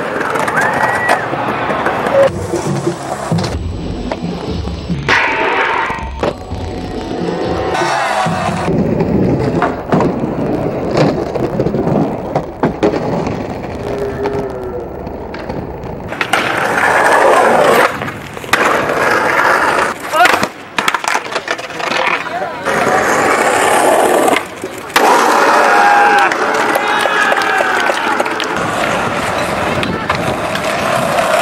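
Skateboards on concrete: wheels rolling, and the boards knocking and clacking as tricks are popped and landed, with voices and music in the mix. The sound changes abruptly several times at the cuts between clips.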